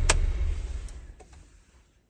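Car engine switched off with the ignition key: a click of the key, then the idling engine dies away over about a second and a half and stops.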